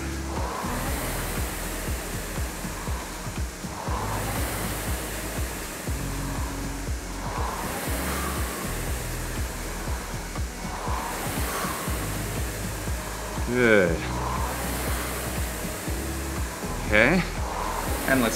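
Concept2 rowing machine's air-resistance flywheel whooshing as it is driven by light rowing strokes, the rush swelling and fading with each stroke about every three and a half seconds. Background music with a steady bass runs underneath.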